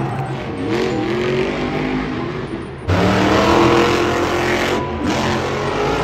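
Monster truck engine revving hard, its pitch rising and falling. The sound gets abruptly louder about three seconds in.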